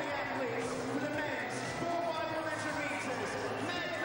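Crowd of spectators in a swimming arena: many voices chattering and calling out at once, with a few sharp claps or knocks among them.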